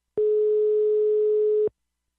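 A single steady telephone tone, about one and a half seconds long, heard over the phone line as a call is placed.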